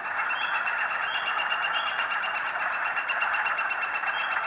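Northern flicker giving its long courtship call: a rapid, evenly spaced series of the same short note, very regular in rhythm and nearly level in pitch, set against a steady background hiss.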